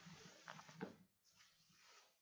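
Near silence: faint room noise with a couple of soft short sounds in the first second, then the sound cuts to dead silence.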